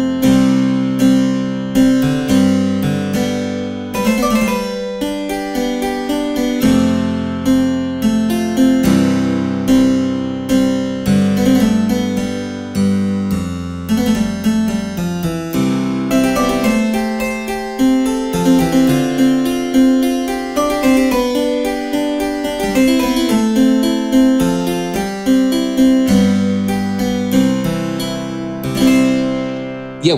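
Sampled Austrian harpsichord on its 8-foot stop in equal temperament, an octave below the 4-foot. It is played as a continuous passage of chords and runs, each note a sharp pluck that dies away quickly.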